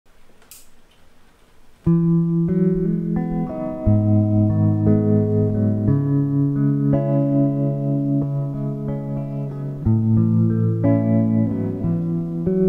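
Clean electric guitar playing slow, ringing chords that start about two seconds in, changing chord every two to four seconds. Before the playing there is only a faint low noise with one short hiss near the start.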